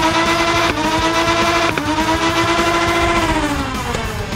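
Motorized Nerf blaster's flywheels spinning up to a steady whine. Two sharp shots come about a second apart, each briefly dipping the pitch, and the motors wind down near the end.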